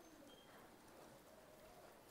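Near silence: quiet room tone in a pause between spoken sentences.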